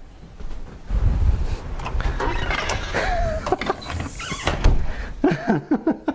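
Wind buffeting a clip-on microphone outdoors, with scattered knocks and rustling and a short chicken call about three seconds in; a man laughs at the end.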